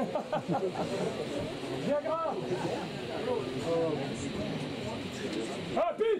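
Audience voices in a small club: overlapping chatter, with a few louder shouts rising and falling in pitch about two seconds in and near the end. No music is playing.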